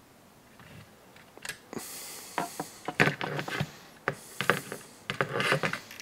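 Handling noise from a 1/5-scale plastic RC truck chassis being moved and lifted on a workbench: a run of light clicks and knocks with rubbing, starting about a second and a half in.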